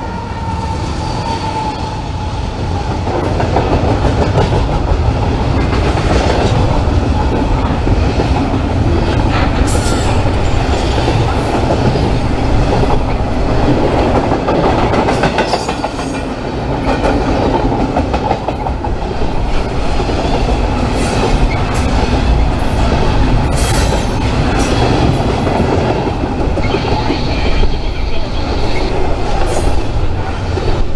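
BNSF double-stack intermodal freight train passing close: a GE C44-9W diesel locomotive, then container well cars rolling by. The wheels and cars make a steady loud rumble, with repeated clicks over the rail joints and occasional brief squeals and clanks.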